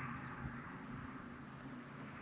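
Faint, steady low mechanical hum under a light hiss of background noise.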